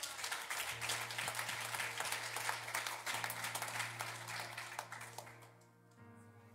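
Congregation applauding, the clapping dying away about five seconds in, over soft sustained keyboard chords.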